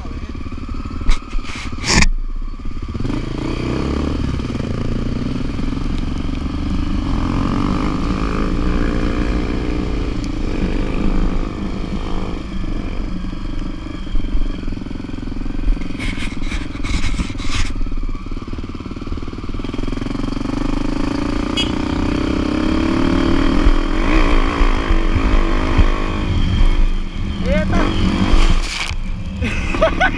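Motorcycle engine running throughout, its pitch rising and falling as it is revved, with sharp knocks of the camera being handled about two seconds in and again about halfway through.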